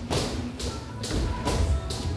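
Two boxers sparring in a ring: several dull thuds from gloved punches and steps on the ring canvas, with music playing in the background.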